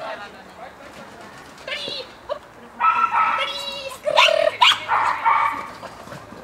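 Small dog yapping in high-pitched barks, in a few bursts through the middle.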